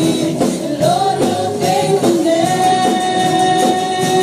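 Live worship band playing a praise song, with several female voices singing together over drum kit, electric bass, guitars and keyboard. A long sung note is held through the second half.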